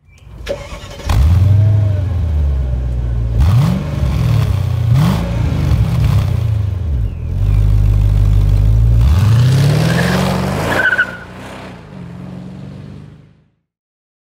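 Mercedes SL55 AMG's supercharged V8 heard from the quad exhaust, catching about a second in. It is blipped twice in quick revs, then revved up and held high for a few seconds. It drops back to idle and cuts off abruptly near the end.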